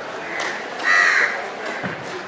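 A crow cawing once, about a second in, the call lasting about half a second.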